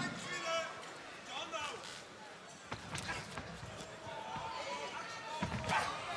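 Arena crowd in the background with scattered distant voices and shouts, and a few sharp smacks of kickboxing strikes landing about three seconds in.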